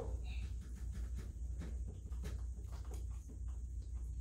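Steady low room hum with faint, soft rustles of clothing and the padded table as a patient's bent leg is pushed into a stretch.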